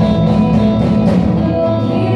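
Live rock band playing an instrumental passage between sung lines: electric guitars holding sustained notes over bass and a drum kit keeping a steady beat on the cymbals.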